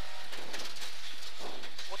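Rally-prepared Ford Escort Mk2's 2.0 16V engine and road noise inside the cabin at speed, a steady, even din.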